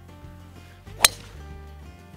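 A golf driver striking a ball off the tee: one sharp crack about a second in, over soft background music.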